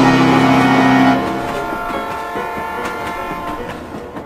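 Electric commuter train pulling into the platform, under a loud held chord of several steady tones. The lower notes drop out about a second in, and the upper ones fade away over the next few seconds.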